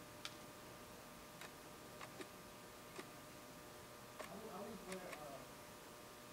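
A handful of faint, irregular small clicks from a hand fibre-optic stripper's jaws as the coating is stripped off a glass fibre bit by bit.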